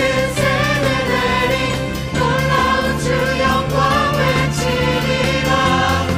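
Live contemporary worship music: a group of singers singing a praise song together over a full band with bass and drums.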